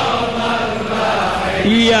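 A crowd of men chanting a Shia mourning chant (latmiyya), their mixed voices blending into a dense wash. Near the end a single male voice strongly starts the next held, sung line of the lament.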